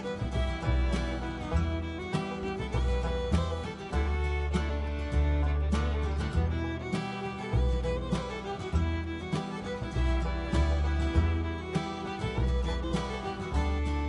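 Instrumental background music with a steady beat and a strong bass.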